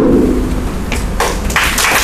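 An audience breaking into applause about a second and a half in, after a couple of single claps.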